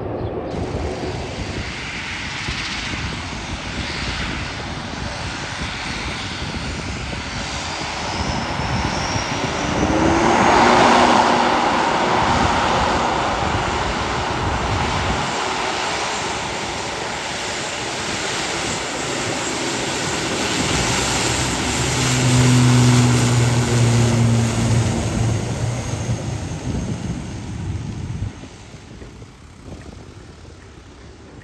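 ATR 72-500 airliner's twin turboprop engines running with propellers turning as it moves along the runway. The sound grows louder about ten seconds in and again past twenty seconds, where a low steady hum comes through, then drops off sharply near the end.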